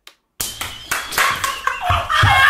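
Rapid hand claps and slaps, starting about half a second in after a moment of silence.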